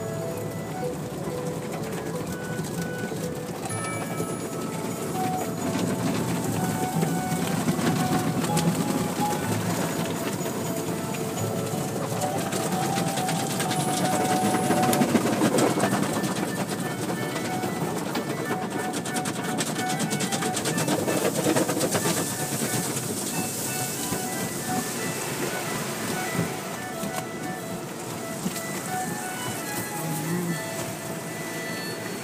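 An automatic car wash heard from inside the car: water spray and cloth brush strips washing over the windshield and body, at its loudest about halfway through. Music plays along with it.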